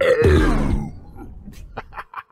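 A man clearing his throat with a loud, rough grunt that falls in pitch and lasts under a second, a reaction to a sip of carbonated Sprite.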